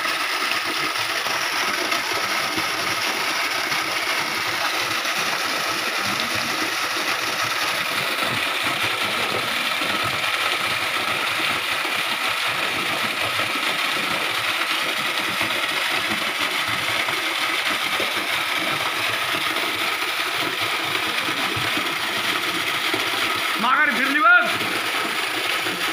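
Steady rush of a waterfall pouring into a rock pool, falling water splashing close to the microphone.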